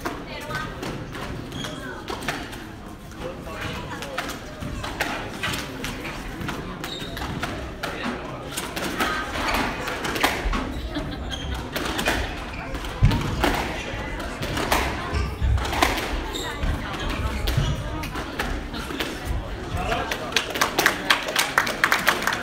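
Squash rally: the ball knocking off rackets and the court walls in quick, irregular hits, coming faster near the end, over spectators' murmuring voices.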